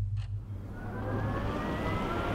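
Tesla Model S electric car driving: a faint whine from its electric motor rising slowly in pitch over swelling tyre and road noise from about half a second in. A steady low drone runs underneath.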